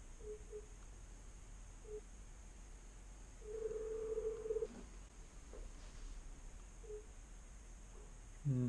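Faint room hum with a few short beeps and, about halfway through, a steady tone of the same pitch lasting over a second: a call signal from the laptop.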